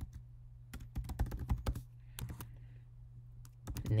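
Typing on a computer keyboard: two runs of quick key clicks with short gaps between them, over a steady low hum.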